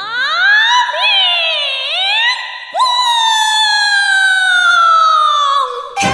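A single high solo melodic line with nothing underneath it, sliding in pitch: it rises and dips through the first two seconds, then about three seconds in swoops up to a long note that slowly falls until it breaks off just before the end.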